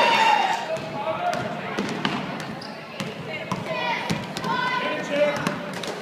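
A basketball bouncing on a hardwood gym floor, a scattering of sharp thuds, among voices and shouts from players and spectators.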